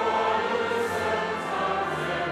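Congregation and choir singing a hymn with pipe organ accompaniment, a new sung line beginning right at the start after a brief breath.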